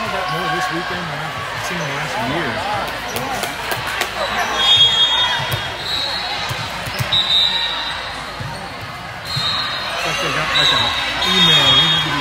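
Chatter of many voices echoing in a large gym hall, with balls thudding on the hard court floor now and then and several short high-pitched squeals in the second half.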